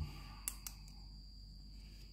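Two quick faint clicks of a pen being handled, close together about half a second in, over a steady high-pitched whine and a low hum.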